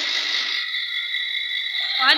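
A steady, high-pitched chirring of night insects, unchanging throughout.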